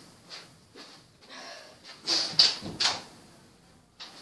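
A person moving away from the recording device: faint rustles and soft knocks, then a brief louder clatter of clicks about two seconds in.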